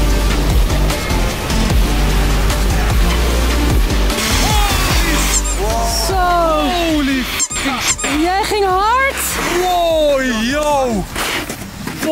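Electronic music with a heavy bass line. From about halfway in, drawn-out whoops and exclamations rise and fall in pitch over it.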